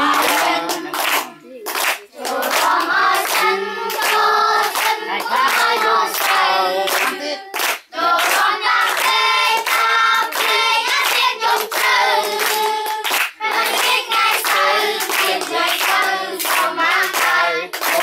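A group of voices singing together with hand clapping along throughout.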